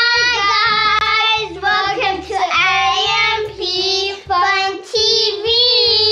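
Children singing a short channel intro jingle in long held, slightly wavering notes with brief breaks between phrases, over a faint low backing.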